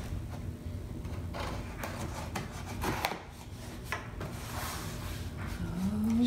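Knife blade slitting the packing tape along the seam of a cardboard shipping box: scraping and rubbing against the cardboard, with scattered sharp clicks.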